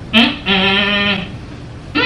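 A voice gives a short cry, then one drawn-out, bleat-like call held at a steady pitch for under a second.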